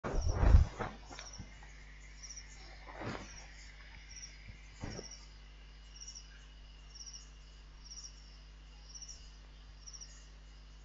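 A loud bump in the first half-second, then two softer knocks about three and five seconds in. Under them an insect chirps faintly and high, about once every 0.7 s, over a steady low hum.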